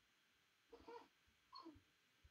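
Near silence: room tone, with two faint, short sounds, one a little under a second in and one about a second and a half in.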